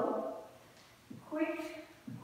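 A woman's voice speaking in short phrases, with a brief pause in the middle.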